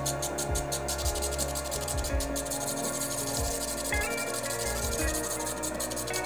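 Background music over a scratchy rubbing: a quartz gem held against a spinning fine-grit faceting lap, grinding a set of crown facets.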